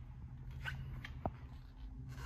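Faint rustling and light clicks from handling as the filming phone is moved, over a steady low hum, with one brief faint squeak a little past a second in.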